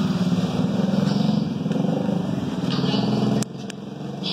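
Diesel generator engine running steadily with a rapid, even low pulse. It cuts off abruptly about three and a half seconds in.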